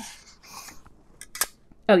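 A thin metal cutting die being set down and positioned on a plastic cutting plate: faint handling and sliding, then one sharp metallic click about one and a half seconds in.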